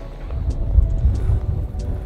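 Gusty wind buffeting the microphone: a low, uneven rumble that swells and dips.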